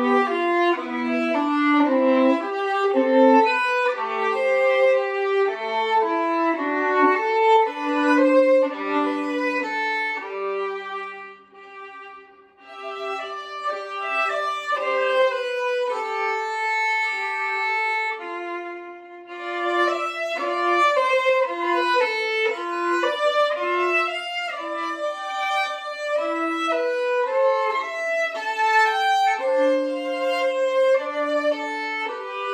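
Solo violin played with the bow, a continuous melodic passage of changing notes. The playing grows softer for several seconds in the middle, then louder again.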